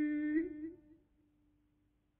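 A singer's long held note in Persian classical avaz, in dastgah Chahargah, on an old recording with the top end cut off. About half a second in, the note breaks into a short ornamented flourish and then dies away within a second, leaving only a faint lingering tone.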